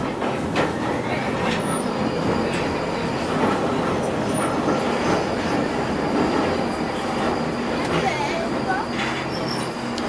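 Underground train running, heard from inside the carriage: a steady rumble of wheels and motors on the track, with a faint high whine above it.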